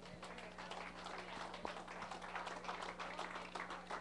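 Scattered clapping from a small audience, many irregular hand claps, over a steady electrical hum.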